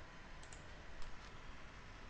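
A few faint computer mouse clicks over a steady low hiss.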